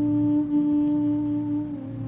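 A single steady held musical note from a backing instrument, with a few overtones, gliding down to a slightly lower note near the end.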